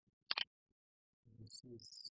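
A quick double click of a computer mouse about a third of a second in, then a man's low, indistinct murmur starting about a second and a half in, with faint high chirps over it.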